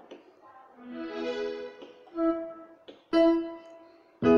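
Electronic keyboard playing sustained chords, three in a row about a second apart. The first swells in gently and the last starts sharply.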